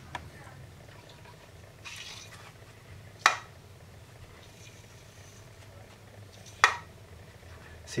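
Two sharp knocks about three seconds apart from a worn original BMW Z3 M strut as its shock absorber shaft is worked by hand. The damper is worn out: the shaft does not rebound on its own.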